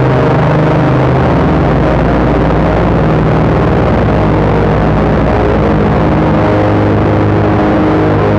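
Distorted synthesizer drone: sustained, layered chord tones over a dense noisy wash, the held low notes shifting about a second in and new notes entering around six seconds in.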